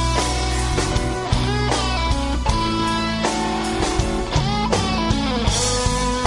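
Instrumental passage of a rock song: electric guitars playing over bass and drums, with no singing.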